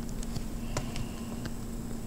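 A few faint taps and clicks of a stylus drawing on a tablet screen over a steady low electrical hum.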